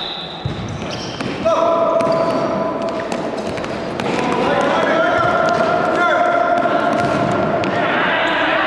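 Futsal being played on a hard indoor court: sharp ball kicks, bounces and footfalls ring in a reverberant hall. Voices shout over the play with long held calls, starting about a second and a half in and again about four seconds in.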